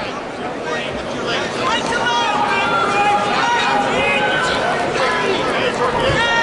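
Crowd in a large indoor arena, with many voices shouting and chattering at once at a steady level.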